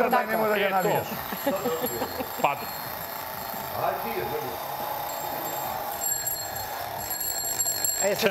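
Mechanical twin-bell alarm clock being shaken and handled, its bell ringing faintly and unsteadily, with a brief word spoken over it.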